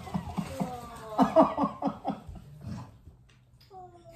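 A boy crying: high whimpering cries that fall in pitch, then a run of quick sobs about a second in, fading toward the end. It is overwhelmed, happy crying at receiving a gift.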